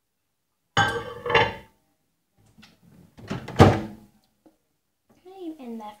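A girl's voice in short bursts, and about three and a half seconds in a sharp thunk, a microwave oven door being shut.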